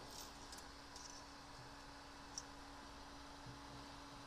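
Near silence: room tone with a faint steady hum and a few faint, brief clicks.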